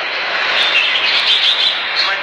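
Caged red-whiskered bulbuls singing, a dense chorus of overlapping bright chirps and warbled phrases with no break.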